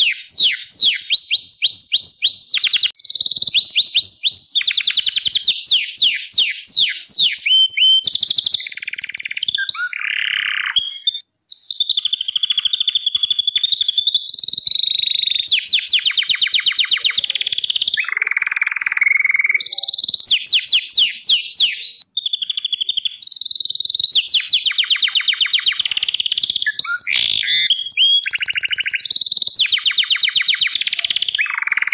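Gloster canary singing a long, high-pitched song of fast trills and rapidly repeated downward-sweeping notes, broken only by two brief pauses, about eleven and twenty-two seconds in.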